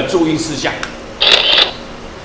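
A man's lecturing voice trailing off at the end of a phrase, then a faint click and a short hiss.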